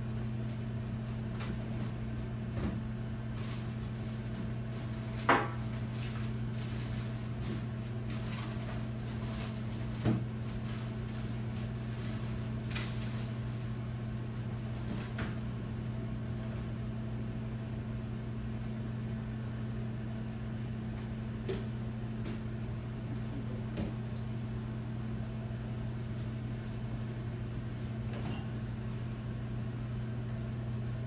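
Kitchen handling sounds over a steady low hum: scattered knocks and clatter as a refrigerator door is opened and food containers are handled. The two loudest knocks come about five and ten seconds in.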